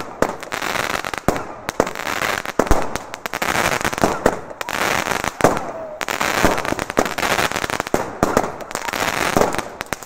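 Feuerwerksvitrine Knallwurst fireworks battery firing: an irregular, fast run of sharp bangs over continuous crackling from the bursting stars.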